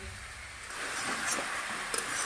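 Pieces of magur catfish frying in mustard oil in a kadhai. The sizzle comes up about a second in, with a couple of light clicks from the spatula against the pan.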